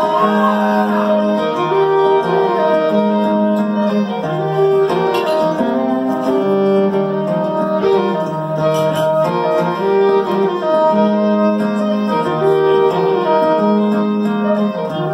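Live country band playing an instrumental break, with a fiddle carrying the lead melody in long bowed notes and slides over strummed acoustic guitar.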